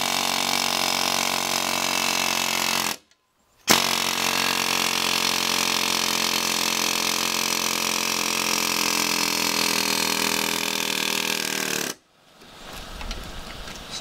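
Pneumatic air hammer with a flat chisel bit rattling as it chisels through the inner metal liner of a leaf spring bushing, splitting it. It runs in two bursts: about three seconds, a brief stop, then about eight seconds, cutting off suddenly about two seconds before the end.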